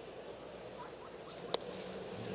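Steady ballpark crowd murmur, then a single sharp pop about one and a half seconds in: a pitched sinker smacking into the catcher's leather mitt on a taken pitch.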